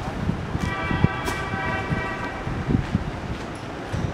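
Street ambience with scattered low thuds and a steady horn tone held for about two seconds, starting about half a second in.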